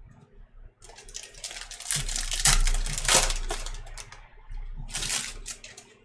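A trading-card pack's wrapper being torn open and crinkled in the hands: dense crackling starts about a second in, is loudest around the middle, and comes again briefly near the end as the cards are pulled out.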